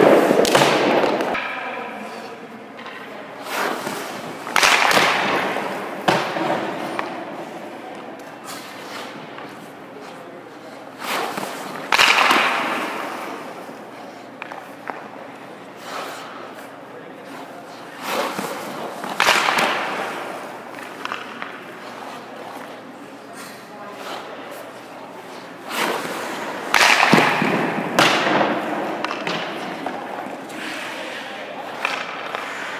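Hockey goalie skate blades scraping and pushing across the ice and pads dropping onto it during crease movement drills: about five loud scrapes several seconds apart, each trailing off in the rink's echo.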